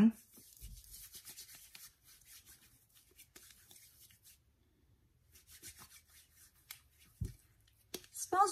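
Hands rubbing together, working in a dab of aloe hand cream: a faint soft swishing that stops for about a second past the middle, with a light thump near the end.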